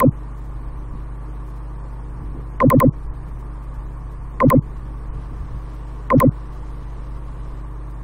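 Short vehicle horn beeps, sounded four times in quick groups of one to three toots. Under them runs a steady low electrical hum.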